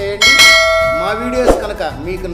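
A bell-chime sound effect rings once about a quarter second in: several steady tones sounding together and dying away over about a second. It is the sound of the notification-bell icon being clicked in a subscribe animation, with background music underneath.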